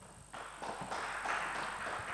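Light audience applause, many scattered hand claps, starting about a third of a second in.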